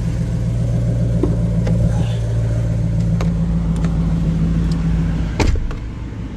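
Ram TRX's supercharged 6.2-litre V8 idling steadily on remote start. Near the end a single thud, the driver's door shutting, after which the engine sounds quieter and muffled from inside the cab.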